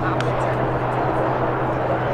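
Outdoor field ambience: a steady low drone under faint, distant voices, with one short click shortly after the start.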